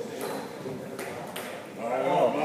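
Table tennis ball striking rackets and table during a doubles rally: three sharp ticks, the first at the start and two more about a second in, close together. Men's voices rise near the end as the rally finishes.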